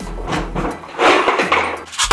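Handling noise from a tractor ignition switch being turned and rubbed in the hand: two scraping swishes, the louder one about a second in.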